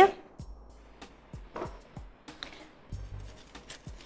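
Kitchen knife cutting a green bell pepper on a wooden cutting board: irregular short knocks of the blade on the board, over faint background music.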